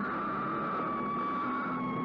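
Old film soundtrack: one long, high, siren-like tone sliding slowly down in pitch over a hissy background.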